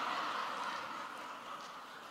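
Audience laughing in a large hall, a dense wash of laughter that gradually dies away.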